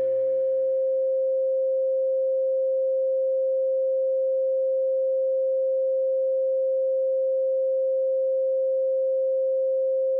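Background music fades out over the first two seconds, leaving a single steady mid-pitched sine tone of the kind played in spiritual frequency videos.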